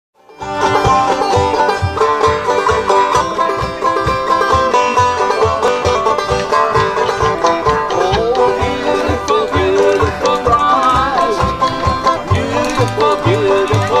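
Jug-band instrumental: a banjo picking and a neck-rack harmonica playing a lead with bending notes, over an acoustic guitar and the steady plucked thump of a tea-chest bass. The music starts about half a second in.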